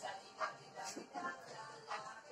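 Music playing in the background while a dog barks twice, once about half a second in and again near the end.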